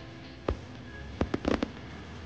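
Aerial fireworks going off: a single bang about half a second in, then a rapid run of about five sharp bangs a little past halfway.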